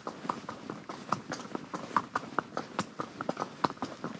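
A horse's hooves clip-clopping on a gravel road, an uneven run of sharp strikes several times a second.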